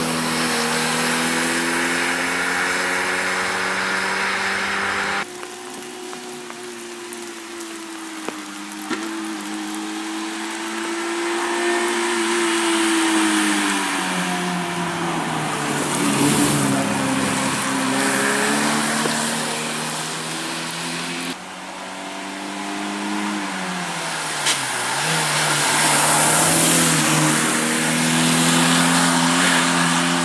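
Fiat Punto competition car's engine driven hard, its pitch repeatedly climbing under throttle and dropping back through gear changes and braking as the car passes. The sound jumps abruptly twice where the footage cuts between passes.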